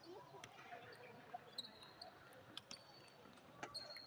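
Table tennis rally: the celluloid ball clicking sharply off paddles and the table, a tick about every half second to second, over faint background chatter.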